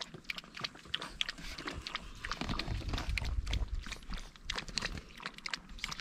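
A chihuahua lapping water from a plastic paddling pool: a quick, uneven run of small wet clicks, with a low rumble about halfway through.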